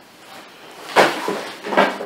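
Plastic packing and cardboard rustling and crinkling as a wrapped item is pulled out of a shipping box: a sharp, loud rustle about a second in that fades over half a second, then a shorter one near the end.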